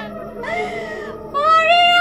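A woman's voice in a high, nasal, drawn-out whine, the put-on wail of a petni (ghost) character: a short wavering note about half a second in, then a long held note near the end.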